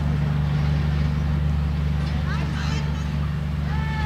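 Bangladesh Railway intercity express train moving away, a steady low drone from its rear coach running through, with people's voices calling out twice.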